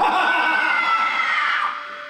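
A person screaming: one long high scream that slowly falls in pitch and fades out before the end.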